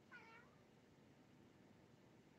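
A single short, faint animal call just after the start, lasting about a third of a second and dipping in pitch at its end, over near silence.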